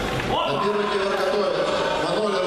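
A man's voice, starting about a third of a second in and holding drawn-out pitched tones, over the noise of a sports hall.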